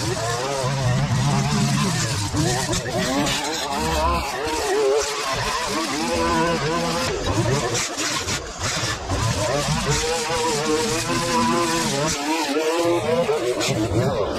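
Line trimmer running as it cuts long grass, its engine pitch wavering up and down as the spinning line bites into the grass.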